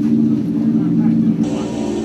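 Electronic music: a sustained low synthesizer drone of several steady held tones, with a brighter hissy layer coming in about one and a half seconds in.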